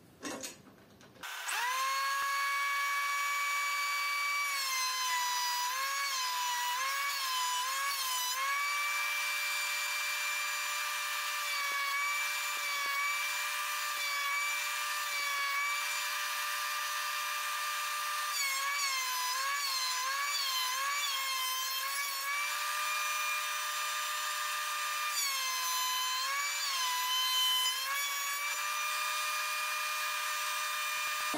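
Einhell TC-SP 204 planer-jointer's motor and cutter block running at a steady high whine after starting about a second in. Its pitch dips briefly several times as it slows under the load of wood being planed.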